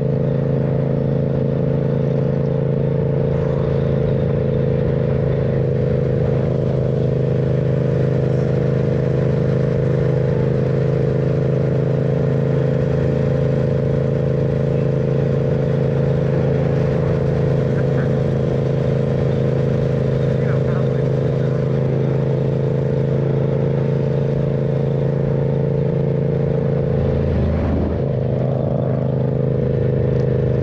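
Yamaha MT-07's parallel-twin engine running at a steady cruise, its note holding one pitch, with a brief wobble in the note near the end.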